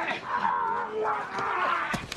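A man wailing in grief: two drawn-out, wavering cries, the second longer than the first.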